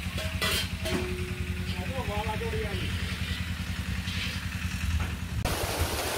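A low, steady engine hum with a few brief voices. About five and a half seconds in, it cuts to the loud, even hiss of torrential rain pouring down.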